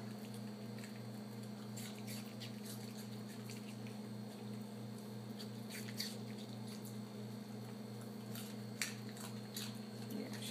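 A Yorkshire terrier chewing small pieces of raw carrot and apple picked out of a plastic ice cube tray, heard as scattered short crunches and clicks over a steady low hum. The tray slows her down, so she chews each piece instead of gulping them.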